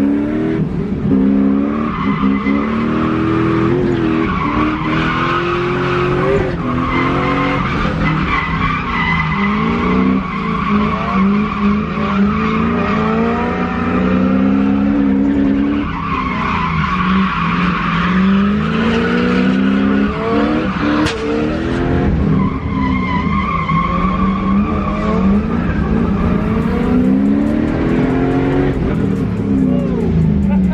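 Drift car heard from inside its cabin on a drift run: the engine revs up and drops back over and over, every few seconds, as the car slides, with the tyres squealing through the slides.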